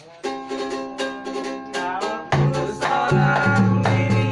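A ukulele strummed in quick chords, joined a little past halfway by low, pitched thumps from a homemade PVC pipe drum that step between a few notes.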